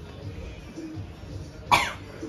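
A single short cough near the end, over faint room noise.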